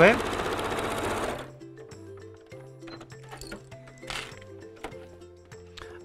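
Elna electric sewing machine stitching a seam at a steady speed, then stopping abruptly about a second and a half in. Soft background music carries on after it.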